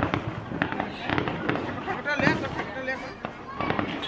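Firecrackers going off in quick, irregular cracks, mixed with the voices of a crowd.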